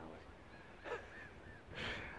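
Faint calls of distant birds: a few short, repeated cries about a second in. A breath is drawn near the end.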